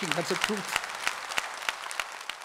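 Audience applauding, with individual hand claps standing out over a steady patter.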